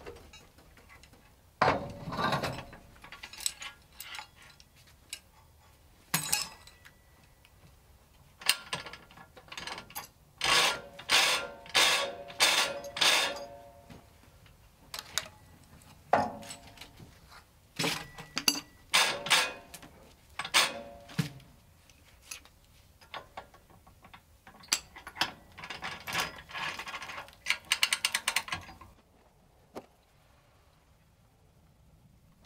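Metal clanking and ratcheting from a portable band sawmill's hand-set log clamps and dogs as the log is secured, with no engine running. It comes in irregular runs of clicks and rattles with pauses between, ending in a fast burst of ratchet clicks near the end.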